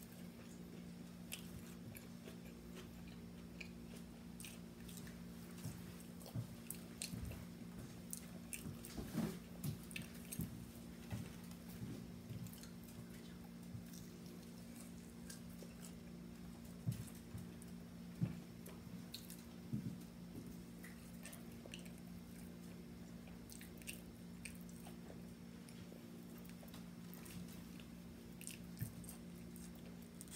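A person eating French fries by hand close to the microphone: chewing and mouth noises heard as scattered soft clicks, over a steady low hum.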